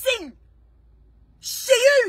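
A woman's voice in the small space of a car: a word trailing off at the start, a pause of about a second, then a loud, breathy exclamation near the end.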